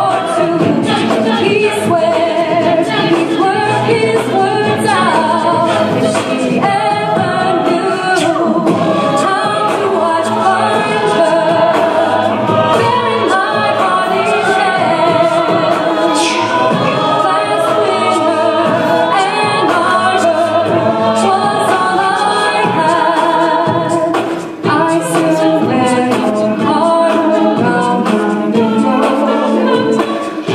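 A mixed men's and women's a cappella group singing a pop-rock song in close harmony into microphones, with no instruments. There is one brief drop in loudness about three-quarters of the way through.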